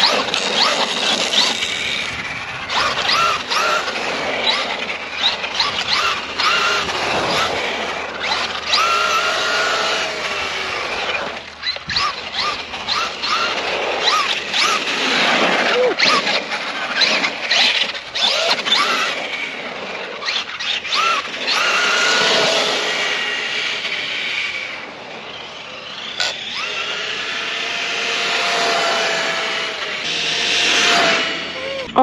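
A brushless-converted Traxxas Rustler 4x4 RC truck driven hard on asphalt. High-pitched squealing and whine rise and fall in pitch with the throttle as the motor and tyres spin up and slide. The sound drops briefly about 25 seconds in.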